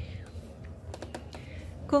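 A short cluster of light clicks about a second in, over a low steady hum.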